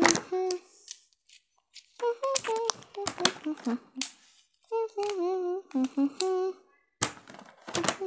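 A child humming a wordless tune in short, steady notes, with a few sharp clicks from hard plastic toy train track pieces being handled.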